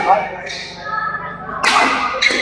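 Badminton rackets striking a shuttlecock in a rally: a hit right at the start and a sharper, louder hit near the end.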